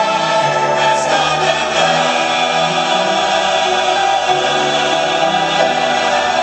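Large mixed church choir singing sustained chords with instrumental accompaniment.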